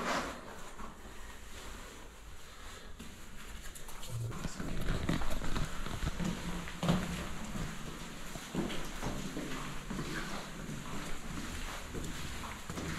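Footsteps climbing hard stairwell steps: irregular thuds from about four seconds in, after a single sharp knock at the very start.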